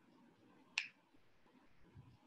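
A single short, sharp click about a second in, over faint room tone.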